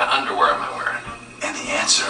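Dialogue from a TV drama played back on a television, a voice speaking over soft background music.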